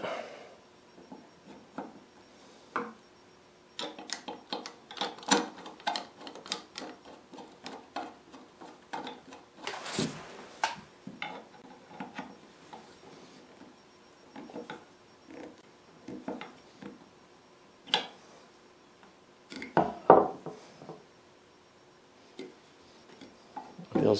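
Screwdriver and long steel bolt clicking and scraping as the painted rear handle (tote) is fastened onto a Stanley hand plane's cast-iron body, with light metal-on-metal clinks and taps on the wooden bench. The clicks come in an irregular flurry through the middle, with a few louder single knocks later on.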